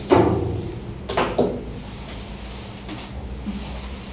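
Metal feeding hatch on an animal enclosure's cage wall being worked open, clanking: a sharp metal bang right at the start and a second knock about a second in, with a metal food bowl knocking against it.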